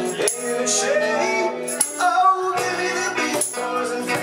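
Live rock band playing: a male lead vocal sung by the bassist over electric bass and electric guitar, with sharp regular percussion strokes.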